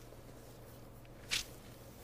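A single short rustle of a Bible page being turned, about a second and a half in, over a faint steady hum.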